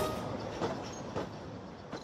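Narrow-gauge passenger train carriages running past on the track: a steady rattling noise with a few faint clicks, gradually fading out.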